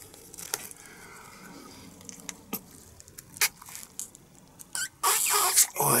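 Small black latex balloon being stretched and worked between the fingers, with a few sharp rubbery snaps and squeaks. About five seconds in comes a louder rush of breath as he tries to blow into a balloon that will not inflate.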